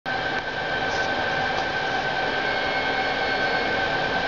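Steady mechanical whirring hum with a thin steady whine above it.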